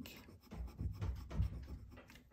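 Pilot Custom 823 fountain pen with a medium gold nib writing on paper: a run of short, faint scratching strokes.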